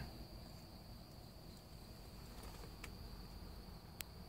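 Faint, steady high-pitched trill of night insects such as crickets, with a few faint ticks.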